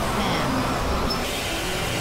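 Dense, steady wash of layered experimental noise and drones, heaviest in the low end, with scattered short tones and glides and no clear beat.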